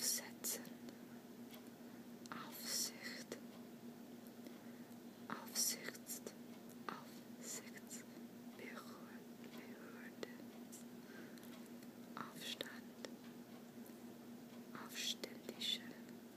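Soft whispering: short whispered words or phrases with gaps of a second or two between them, over a steady low hum.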